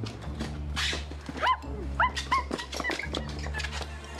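A few short, high yelps like a small dog's whimpers, each rising then falling, over a steady low hum with scattered light clicks.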